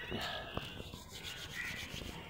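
Small open fire of dry maize stalks crackling as it burns, with a dry rustling rub of hands warmed over it and one sharper crack about half a second in.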